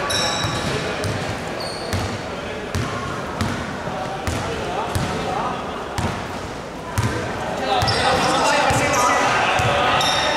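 Basketball dribbled on a wooden gym floor, a bounce roughly every three-quarters of a second, with short sneaker squeaks, echoing in a large sports hall. Players' voices pick up in the last couple of seconds.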